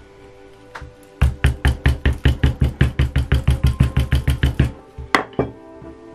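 Soft-faced mallet tapping a piece of leather on a folded towel to shape it: a quick, even run of about twenty blows, roughly five a second, then two sharper knocks.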